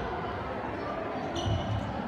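A football being kicked and bouncing on a sports hall floor, thudding and echoing in the large hall, with faint voices of players and onlookers under it. About one and a half seconds in there is a short high squeak.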